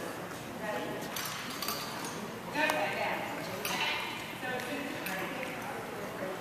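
Indistinct voices of people talking in the background of a large gym hall, with a few light knocks or clicks.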